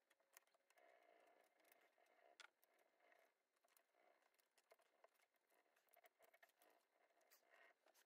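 Near silence with faint, irregular scratching, ticking and crinkling: a wooden stick rubbing a rub-on flower transfer through its plastic backing sheet onto a painted nightstand.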